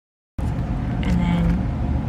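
Dead silence, broken abruptly a moment in by a steady low rumble that runs on, with a short hummed voice sound about a second in.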